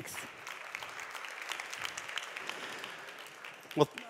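Audience applauding steadily and fairly quietly, the clapping dying away just before a man starts to speak.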